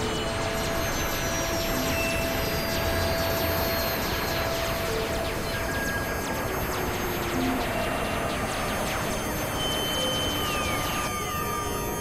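Experimental electronic noise music from synthesizers: a dense, steady hiss full of crackling clicks, with scattered held tones and slow sliding pitches. Near the end the texture shifts and a few falling glides drop through it.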